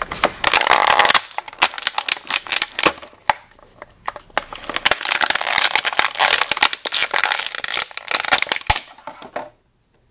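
Clear plastic bag crinkling and crackling as hands work a plastic toy figure out of it, dying away about nine seconds in.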